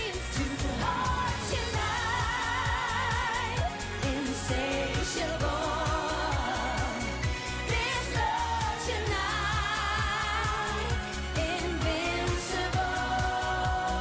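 Up-tempo pop song with a steady dance beat and a woman singing long held notes with vibrato.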